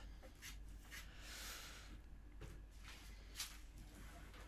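Faint scratchy rubbing, about a second long and starting about a second in: snooker chalk being scraped on the cue tip. Otherwise near silence, with a few tiny soft knocks.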